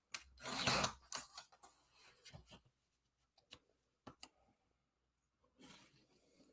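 Sliding-blade paper trimmer cutting through a sheet of cardstock in one swish within the first second, followed by a few faint clicks and taps as the paper is handled.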